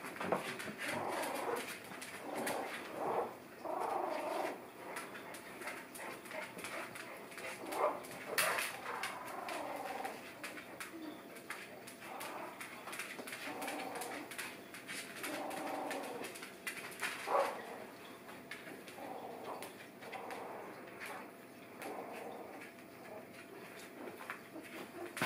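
Three-week-old puppies whimpering and squeaking in short, irregular high calls, scattered through the whole stretch, with light clicks and scratches in between.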